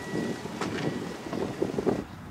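Wind buffeting the microphone outdoors, with a few brief knocks in the second half. A faint steady high tone stops about half a second in.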